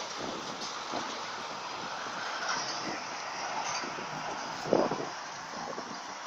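Scania articulated truck with a curtain-side trailer passing by and driving off, a steady rumble of engine and tyre noise. A brief louder burst of noise comes near the end.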